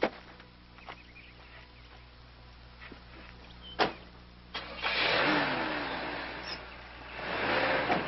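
A sharp knock about four seconds in, then a car engine starts and runs loudly, surging and easing off, then swelling again near the end.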